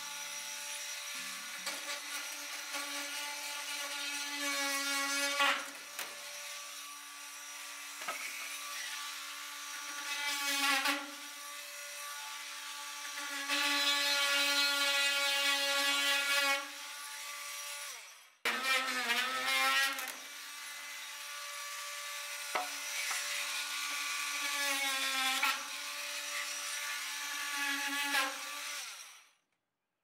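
Cordless drill running in about six runs of a few seconds each, its motor whine rising and falling in pitch as it works into wooden ceiling purlins overhead.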